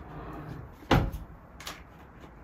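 A single sharp knock about a second in, with a short ring after it and a lighter click soon after: a kitchen cupboard door being shut.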